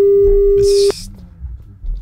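A telephone line tone: one loud, steady mid-pitched beep lasting about a second, then it cuts off.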